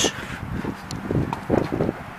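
Low, uneven rumble of wind and handling noise on the microphone of a handheld camera being moved, with a few faint ticks.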